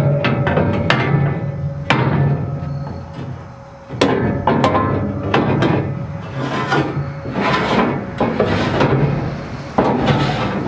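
Aluminum loading ramps being slid back into their storage slot under a steel dump trailer bed: several sharp metal clanks, then a longer scraping of metal on metal from about four seconds in.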